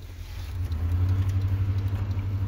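Low rumble of a car engine heard from inside the cabin, growing louder about half a second in and then holding steady.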